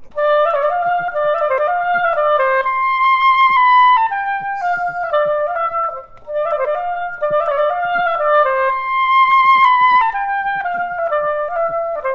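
Solo oboe playing a quick melodic passage of short notes, twice in much the same shape, with a short breath about six seconds in.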